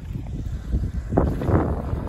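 Wind buffeting the microphone, a steady low rumble, with a brief louder gust about a second in.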